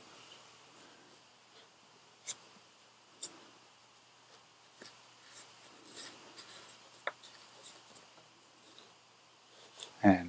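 Faint rustling and scratching of a headset cable being pushed in and tucked under a half helmet's padded liner, with a few small clicks and taps scattered through.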